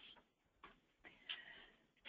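Near silence: room tone with a few faint, brief ticks.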